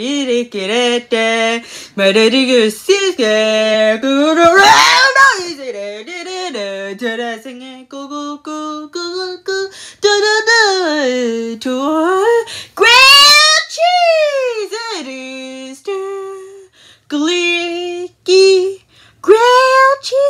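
A young person singing unaccompanied in a small room, with held notes and wide swoops up and down in pitch, including a big rise and fall about two-thirds of the way through.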